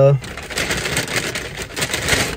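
Crinkling and rustling of a paper fast-food bag being handled, a dense run of small crackles.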